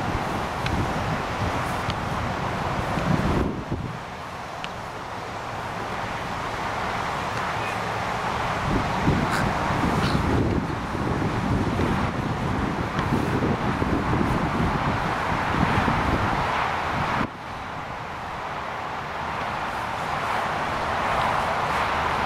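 Wind rumbling on the microphone over a steady outdoor hiss, with no speech. The noise drops suddenly twice, about three seconds in and again near the end, then builds back up.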